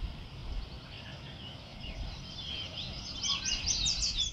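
A songbird singing over a low background rumble: scattered high chirps at first, then from about halfway a busier run of quick, repeated sweeping notes that grows louder toward the end.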